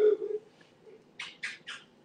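A voice trails off at the start. About a second later come three quick, breathy, unpitched voice sounds, each about a quarter second apart.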